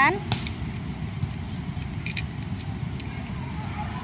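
A few faint plastic clicks as parts of a Transformers Megatron toy are pressed into place during its transformation, over a steady low background rumble.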